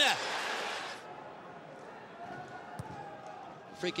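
Stadium crowd noise: a loud roar that dies away after about a second, leaving a lower murmur with faint chanting, and a single soft thud near the end of the third second.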